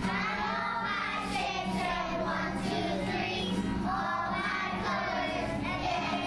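A class of kindergarten children singing a song together, accompanied by an acoustic guitar.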